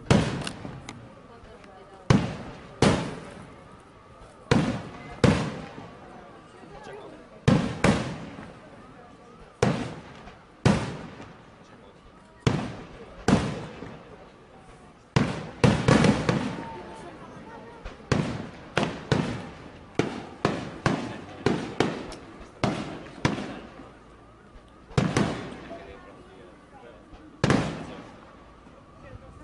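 Aerial firework shells bursting in the sky, sharp reports about once a second that crowd together into a quicker run around the middle, each trailing off in echo.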